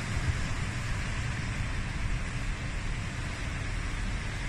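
Small sea waves breaking and washing on the shore in a steady hiss, with an irregular low rumble of wind on the microphone.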